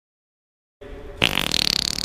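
Dead silence, then a little under a second in a sound starts, and just after a sudden loud, hissy whoosh with a rising high pitch cuts in.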